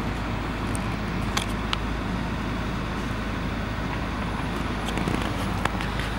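Steady low rumble and hiss of a stationary car running, heard from inside the cabin, with a few faint clicks.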